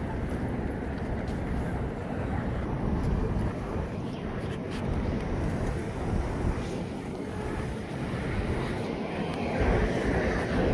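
City street ambience: a steady low rumble of traffic with wind on the microphone.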